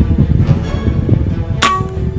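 A single sharp air rifle shot about one and a half seconds in, with a short metallic ring after it, over background music with a steady beat.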